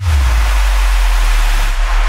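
Title-card transition sound effect: a loud whoosh of noise over a deep bass rumble, starting suddenly and holding steady.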